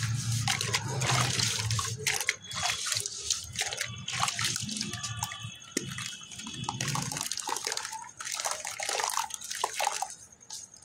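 Hands squeezing and crumbling lumps of geru (red ochre clay) in a bucket of water: irregular wet squelching, splashing and dripping.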